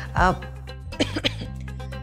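A man coughs on cigarette smoke just after the start, over background music with a steady low bass line.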